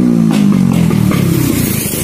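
A vehicle engine running loud, its pitch falling steadily over the first second and a half.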